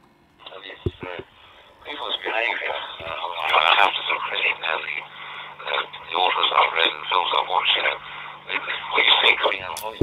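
A ham operator's voice received over a D-STAR reflector and decoded by the Dude-Star software, heard from the computer's speaker: thin, narrow-band digital-radio speech with nothing above about 4 kHz. A low steady hum runs under its middle part.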